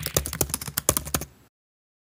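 Keyboard-typing sound effect: a quick run of sharp key clicks, roughly eight a second, that stops suddenly about one and a half seconds in.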